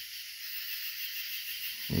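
Steady, high-pitched chorus of night insects outdoors, an even buzzing with no breaks.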